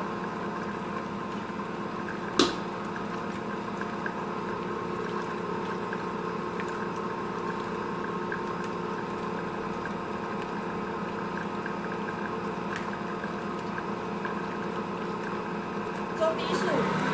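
Stand mixer motor running steadily, its whisk beating egg whites with sugar and cornstarch into meringue. A single sharp click sounds about two seconds in.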